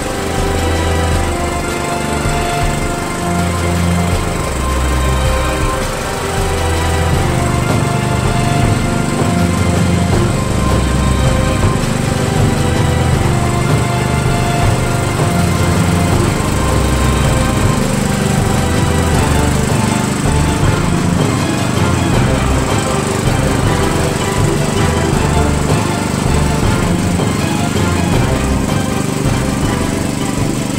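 MTD-built Cub Cadet lawn tractor engine running as the tractor drives, mixed under background music.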